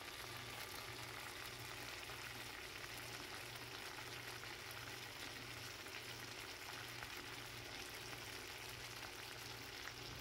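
Shrimp frying in olive oil and marinade in a nonstick skillet: a steady, even sizzle with the pan liquid bubbling, over a faint low hum.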